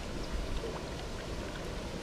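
Steady wind rumble on the microphone over faint water sounds from the shallow pool, with a few small ticks.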